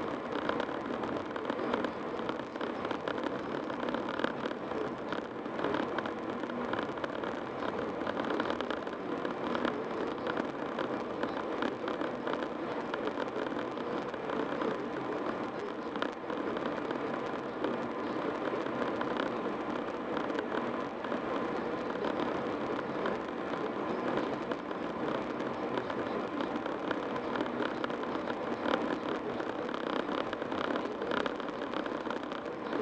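Steady road noise of a car cruising at highway speed: an even rush of tyres on asphalt and passing air, with no distinct engine note and no separate events.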